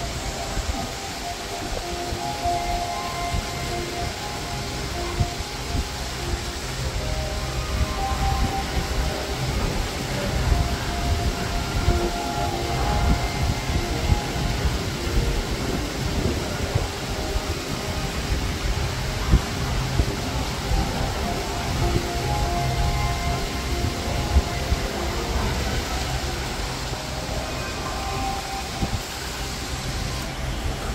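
Steady low rumbling room ambience inside a large indoor animal exhibit hall, with faint scattered tones drifting through it.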